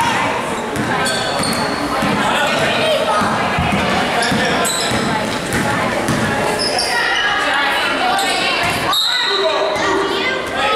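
A basketball being dribbled on a gym floor, with short sneaker squeaks and spectators' voices echoing in the hall. A referee's whistle blows with a steady high tone near the end, stopping play.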